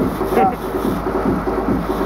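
Sport-fishing boat's engine running with a steady pulsing rumble, about four pulses a second, under wind on the microphone; a short voice call rises about half a second in.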